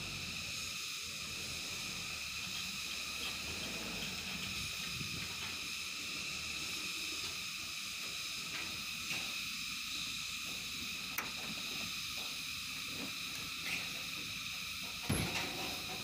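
Steady high-pitched insect drone over a low, uneven rumble, with a sharp thump just before the end.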